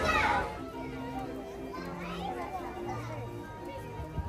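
Loud children's voices and chatter that drop away about half a second in, followed by quieter music of held low notes stepping from pitch to pitch, with faint voices over it.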